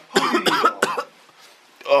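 A person coughing, a few quick loud coughs in the first second.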